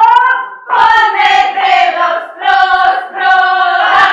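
Women's folk choir singing a Ukrainian comic folk song unaccompanied, in short phrases with brief breaks between them.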